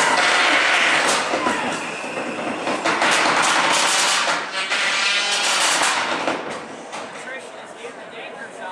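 A crowd of spectators shouting and cheering around a robot-combat arena, a dense wash of voices, loud for about six seconds and then dying down.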